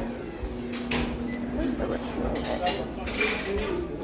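Restaurant kitchen clatter: dishes and cutlery clinking in scattered knocks, a cluster about a second in and another around three seconds in, with indistinct voices behind.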